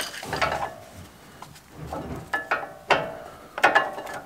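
Brake pad and its metal shims being worked loose inside a truck's front brake caliper: a handful of sharp metallic clicks and knocks, some with a brief ring, spread across the few seconds.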